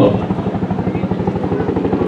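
Helicopter in flight, its main rotor making a rapid, steady beat as it approaches.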